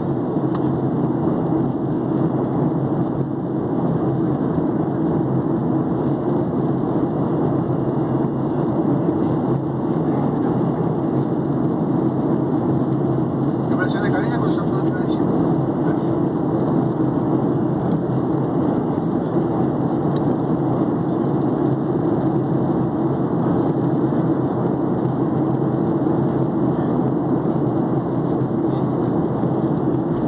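Steady cabin noise of a Boeing 737-800 in flight: a deep, even rumble of engines and airflow heard from a seat over the wing. A brief higher-pitched sound rises above it about halfway through.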